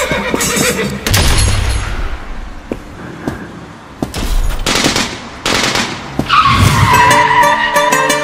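Film sound effects of a car chase over a dramatic score: a car driving hard with tyres skidding, in several loud swells. A long tyre squeal starts about six seconds in.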